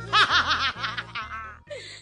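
A quick run of high-pitched laughter, about eight laughs a second, fading out after about a second. It is over background music with a steady bass beat.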